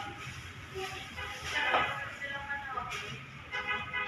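Indistinct voices talking, with a steady low hum underneath.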